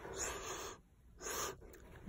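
Two short, faint breathy sounds close to the microphone, about a second apart.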